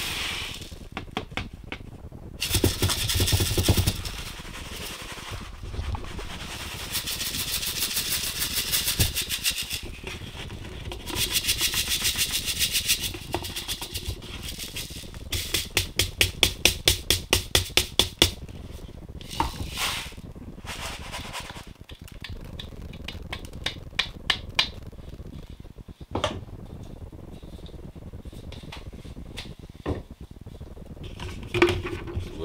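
Gravel and sand being shaken through a gold-classifier screen over a bucket: grit rattling and hissing on the wire mesh in several bouts, including a fast, even shaking of about five strokes a second, with knocks as the plastic screen is handled.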